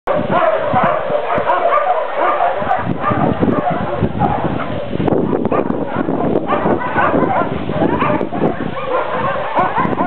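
Dog whining and yipping without a break, many short calls that rise and fall in pitch.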